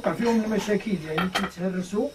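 A man's voice talking, with a few light metallic clinks as small metal sewing-machine binder parts are handled against each other.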